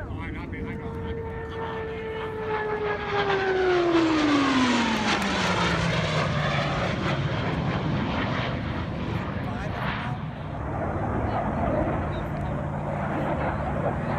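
Blue Angels F/A-18 Hornet jets flying past: a whine that falls steeply in pitch about four to six seconds in as they go by, loudest at the pass, then a steady jet rumble.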